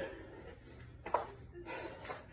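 A man breathing between sets of jump lunges, with a single short spoken word about a second in, over quiet room tone.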